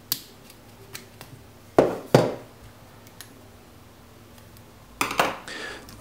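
A hobby knife and fingers prying a hard plastic dome-shaped cap off a spray can top: a few light clicks, two sharp plastic snaps close together about two seconds in, and a short burst of plastic handling clatter near the end.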